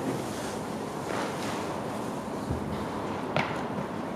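Steady hall background noise with a few light foot contacts as an athlete steps off a low box into a knee-drive drill, the sharpest a little after three seconds in.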